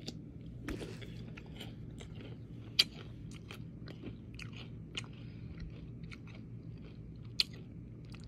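A person chewing a mouthful of crunchy granola and fruit, soft crackling and small clicks scattered throughout, with two sharper clicks standing out, one about three seconds in and one near the end.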